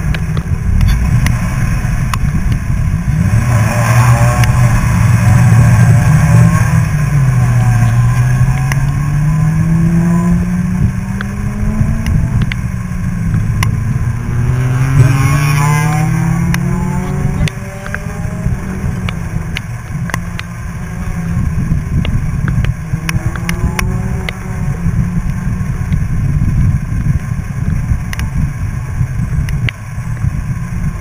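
Sports car engine heard from inside the car during an autocross run. Its pitch climbs and drops twice under hard acceleration and lifts, over steady wind and tyre noise, then stays lower and less steady near the end.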